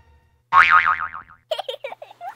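Cartoon "boing" sound effect: a loud springy tone that wobbles up and down in pitch several times as it slides downward, lasting just under a second and starting about half a second in.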